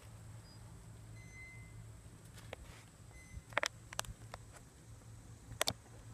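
Faint steady low hum of distant highway traffic, with a few faint brief high beeps in the first half and sharp clicks a little after the middle and again near the end, from a source that could not be identified.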